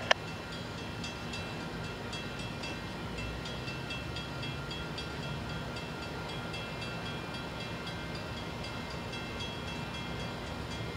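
Steady outdoor background noise: a low rumble with hiss and a few faint, steady high tones, and a short sharp click right at the start. No train is passing.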